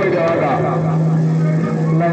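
A man's voice calling over a steady low hum.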